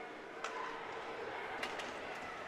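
Faint ice-rink sound of a hockey game in play: an even hiss of skates and arena noise, with a few sharp clicks about half a second in and near the end.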